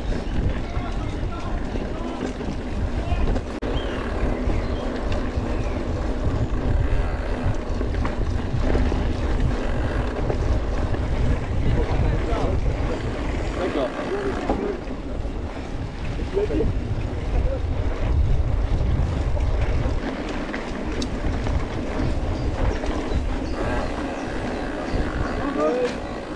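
Wind buffeting the microphone while riding a mountain bike, with the uneven rumble of tyres rolling over a dirt trail.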